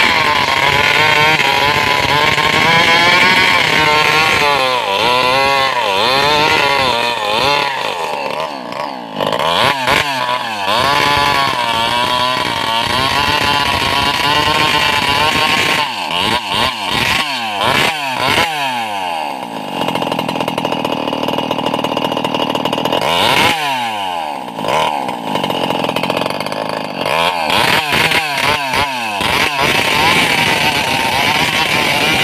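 Two-stroke chainsaw engine running continuously at speed, its pitch repeatedly dipping and rising as the revs change.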